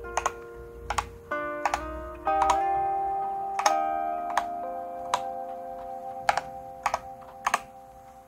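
Single key presses on a Lofree 1% transparent mechanical keyboard with Kailh Jellyfish switches: about a dozen sharp clicks, spaced irregularly. They sound over background music with held notes.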